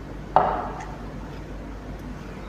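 A single sharp clink of a hard object knocking against glassware about a third of a second in, ringing briefly and fading quickly, followed by a few faint ticks.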